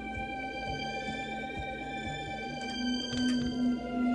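Electronic keyboard played four-handed, one player on the low part and one on the high part, holding long sustained chords in a dramatic piece. The chord changes about three seconds in, with a low note that pulses.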